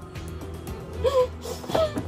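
A woman crying, with short wailing sobs that bend up and down in pitch, about a second in and again near the end, over background music.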